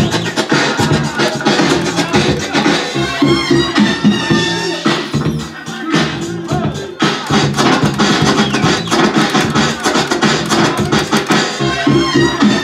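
Dance music mixed live on DJ turntables and a mixer, with vinyl record scratches cutting over the beat.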